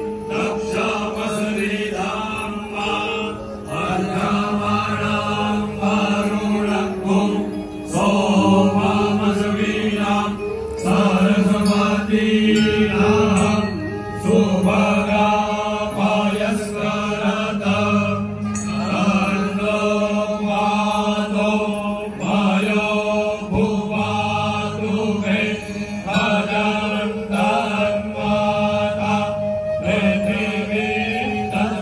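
A group of Brahmin priests chanting Vedic Sanskrit shlokas in unison through microphones, holding steady reciting tones in long phrases with short pauses between them.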